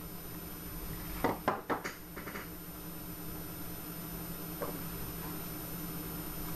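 Plastic clicks and taps from a small digital inclinometer being handled and its buttons pressed: a quick cluster of clicks a little over a second in, then one fainter click later, over a steady low hum.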